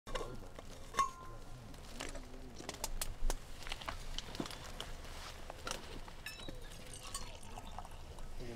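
Stainless steel Yeti bottle and mug handled: sharp metallic clicks and clinks as the cap is worked off, one ringing briefly about a second in and another loud knock a little after three seconds, then hot liquid poured from the bottle into the steel mug.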